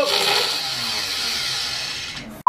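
CNC machine spindle motor running with a steady high-pitched whine, getting quieter towards the end.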